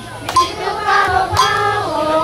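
A group of children singing or chanting together, with a sharp metallic strike about once a second keeping time.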